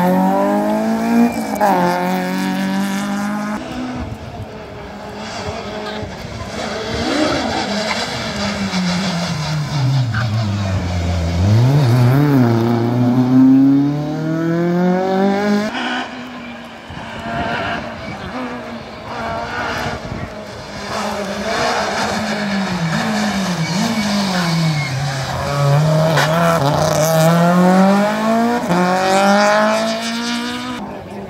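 Rally car engines at hard throttle: a rally car accelerating out of a hairpin with its revs climbing and dropping back through quick gear changes, then engine notes falling and rising again as cars brake and accelerate, and another car revving up through the gears near the end.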